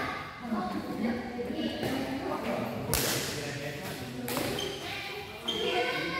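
Badminton rackets striking a shuttlecock: two sharp hits, about three seconds in and again just over a second later, echoing in a large hall over steady talk.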